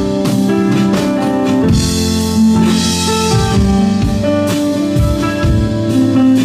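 Live instrumental music: an electronic keyboard playing sustained chords and melody over a drum kit, with cymbals swelling briefly in the middle.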